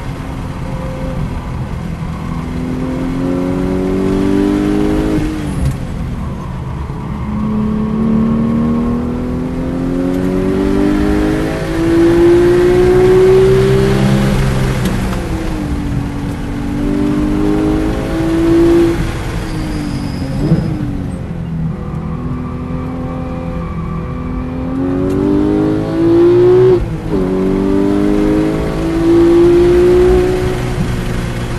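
Porsche GT3's naturally aspirated flat-six engine heard from inside the cabin under hard track driving, its pitch climbing repeatedly as it accelerates and dropping back at each gear change or lift for a corner.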